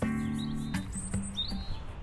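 Background music ends on a held chord within the first second, then a small bird chirps twice, high and brief, over outdoor background noise.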